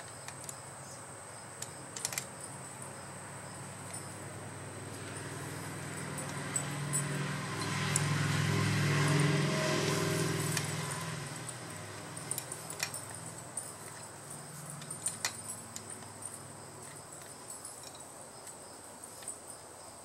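Scattered metallic clicks and clinks of a wrench and a steel crank puller being worked into a bicycle crank arm. A passing engine swells and fades in the middle and is the loudest sound, while insects chirp steadily in the background.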